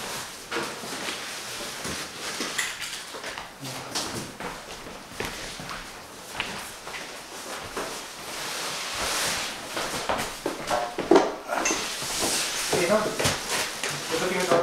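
Large cardboard furniture boxes being moved on a dolly and set down: irregular knocks and thuds with cardboard scraping, and brief voices near the end.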